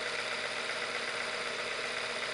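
Visible V8 model engine running steadily at a slow idle of about 770 RPM, with a rattle from its freshly assembled pistons and cylinders, still dry as it is being run in.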